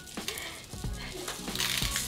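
Sequins being shaken out of a small jar into a plastic bottle: a run of light, scattered clicks and rattling. Soft background music plays underneath.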